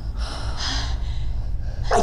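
A young woman's sharp gasp for breath, lasting about a second, as she comes to after a possessed fit. A low rumble runs underneath.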